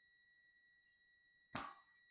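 Near silence: room tone carrying a faint steady high electronic tone, with a short rush of noise, like a breath, about one and a half seconds in.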